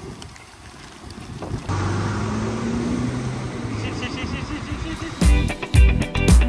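Motor scooter engine running as it is ridden through floodwater, a steady low drone over a wash of water noise that comes in about two seconds in. Music with a strong beat starts near the end.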